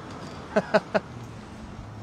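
A short, quiet laugh in three quick bursts, about half a second to a second in, over a faint steady low hum.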